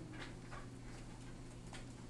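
A few faint, irregular ticks and light scratches of a pen or stylus writing on a whiteboard or tablet surface, over a low steady hum.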